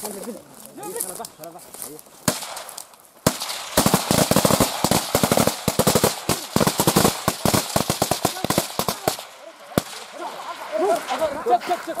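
Automatic rifle fire: a single shot about two seconds in, then a long run of rapid gunshots in quick bursts lasting about six seconds, and one more shot near the end.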